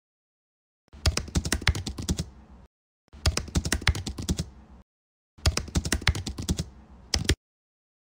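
Computer keyboard typing: three quick runs of keystrokes, each about one and a half to two seconds long, with short pauses between them, starting about a second in.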